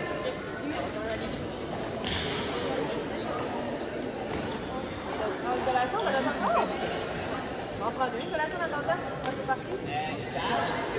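Echoing sports-hall hubbub: children's voices and calls, with a few short sharp hits from badminton rackets striking shuttlecocks in the second half.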